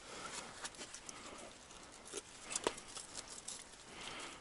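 Faint clicks and rustles of a hook being worked free from a small burbot that has swallowed it deep, with one sharper click about two and a half seconds in.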